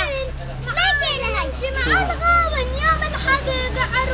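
A child's high voice chanting verses in Arabic, the notes gliding and held, over a steady low hum.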